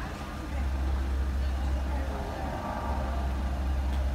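Steady low rumble of idling road traffic, with a vehicle passing and swelling about two seconds in.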